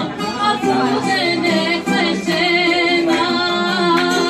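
A woman singing a rebetiko song live, holding wavering notes, accompanied by acoustic guitar and bouzouki.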